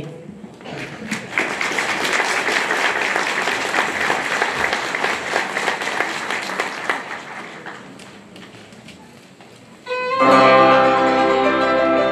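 Audience applauding, the clapping tailing off over several seconds. About ten seconds in, a Moravian cimbalom band strikes up, with violins playing sustained notes.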